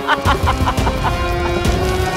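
A woman's cackling villain laugh, quick 'ha-ha-ha' pulses that trail off about a second in, over dramatic background music.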